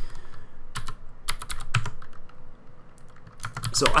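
Typing on a computer keyboard: quick, irregular runs of keystrokes with a short lull in the middle.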